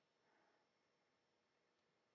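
Near silence, with no audible sound.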